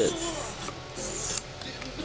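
Small knife blade stroked freehand across a high-grit whetstone: two scraping strokes about a second apart, then fainter scraping.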